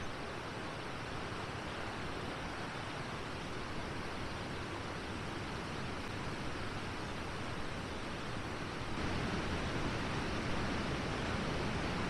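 Steady rushing of river water, a continuous even noise that gets slightly louder about nine seconds in.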